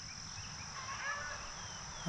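Quiet outdoor ambience with a steady high-pitched hum and a few faint, distant bird calls about a second in.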